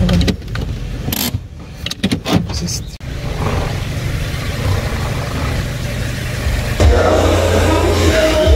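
Car engine idling, heard from inside the cabin, with a few sharp clicks and knocks in the first three seconds. A louder low hum starts suddenly near the end.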